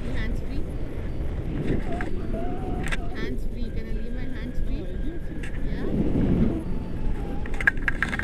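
Wind rushing and buffeting over a selfie-stick action camera's microphone in tandem paragliding flight, with a woman's voice talking over it.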